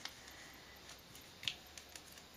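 Faint handling of a thin plastic pocket-page sheet being folded in half by hand, with a few light ticks and one sharper click about one and a half seconds in.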